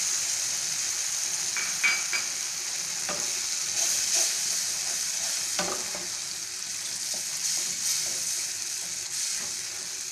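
Tomato and mashed dal sizzling in a nonstick pan as a wooden spatula stirs it. There is a steady hiss throughout, with a few scrapes and knocks of the spatula against the pan, around two, three and five and a half seconds in.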